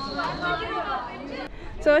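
Several people's voices chattering, with a steady high tone that fades out about half a second in. A woman starts speaking just before the end.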